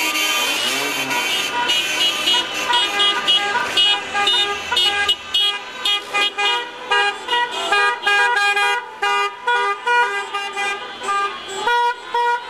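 Many car horns honking together in celebration, long overlapping blasts at first, then breaking up into many short toots from about four seconds in.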